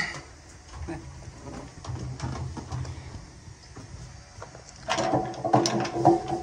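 Handling noise from a handheld phone being carried, with small knocks and rustles over a low hum. About five seconds in, a louder sound with a steady pitch comes in.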